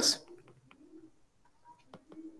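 Faint light taps of a stylus writing on a tablet screen, with a faint low, steady sound lasting under a second behind them, just after a spoken word ends.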